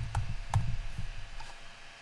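A few scattered light clicks from a computer keyboard and mouse, over a low rumble that fades out after about a second.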